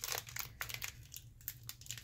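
Foil Pokémon booster pack wrapper crinkling in the hands as it is worked open, a quiet scatter of short, irregular crackles.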